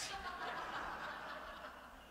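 Soft chuckling dying away after a joke.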